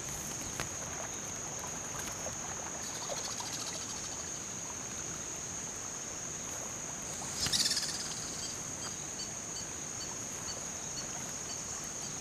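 Steady high-pitched insect drone of cricket-like chirring, with faint repeated chirps. A brief scratchy rustle about seven and a half seconds in.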